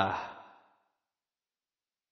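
A man's voice reading Arabic ends on its last word, fading out in the first half second, followed by dead silence.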